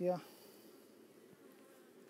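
Honeybees of an opened hive buzzing, a faint, steady low hum.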